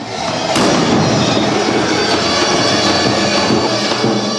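A sudden loud crash about half a second in, then a dense, steady clanging of many large kukeri bells with high ringing tones.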